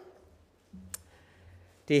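A quiet pause in a man's speech, broken by a single sharp click about a second in, just after a brief low hum; the voice starts again near the end.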